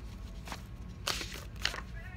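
Paper index cards being handled and picked up: a few brief rustles and scrapes of card stock, over a low steady hum.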